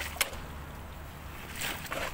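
Shovel digging dry, stony soil around a tree trunk: a sharp clink of the blade on stone about a fifth of a second in, then a scrape of the blade through the soil near the end.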